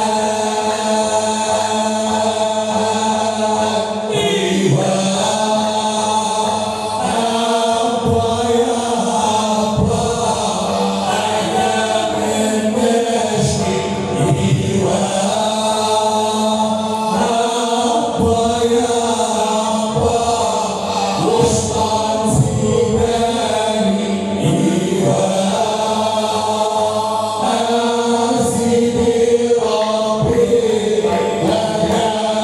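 Men of the Hamadsha Sufi brotherhood chanting a devotional song together in unison, with long held notes over a steady low drone.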